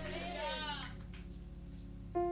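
A faint, drawn-out wavering voice fades away during the first second. Under it, soft sustained background music tones hold steady and low.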